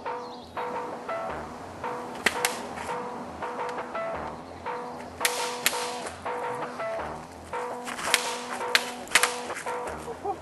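Bamboo shinai practice swords clacking together in sharp strikes during sparring: a pair about two seconds in, another pair about five seconds in, and a quick run near the end. Background music with a steady beat plays underneath.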